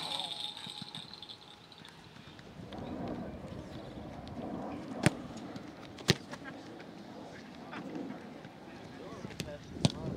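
Footballs kicked off tees on a turf field: sharp single thuds of foot on ball, two loud ones about a second apart near the middle and another near the end. Distant voices of people on the field run underneath.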